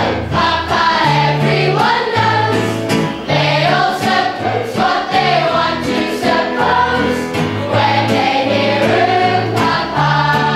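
A large cast of young voices singing together in chorus over an instrumental accompaniment, with a bass line of held notes that change about once a second.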